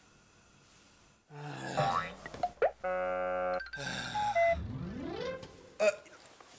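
Cartoon-style comedy sound effects for a snoring gag. After about a second of quiet comes a held buzzy honk, then a rising slide-whistle glide, and a sharp click near the end.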